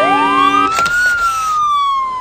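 Game-show sound effect: a siren-like tone that sweeps up for about a second and then slowly falls, over a short held chord that cuts off early. It marks the contestant's pick landing on the speed-camera (Saher) penalty, a losing turn.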